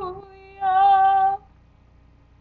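A woman singing unaccompanied in a sustained style: a held note that ends just after the start, then a second long, steady note from about half a second in to about a second and a half.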